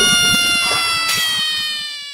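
Comedic brass sound effect: a long held trumpet-like note that slides slowly down in pitch and fades out, cutting off at the end. It is the tail of a mocking 'heart break' effect.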